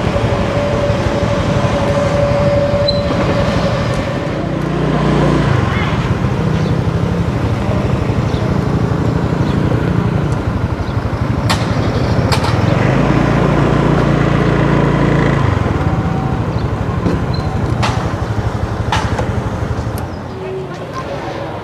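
Motor scooter on the move: a steady low rumble with engine hum that swells twice, about five seconds in and again for a couple of seconds past the middle, and a few sharp clicks later on.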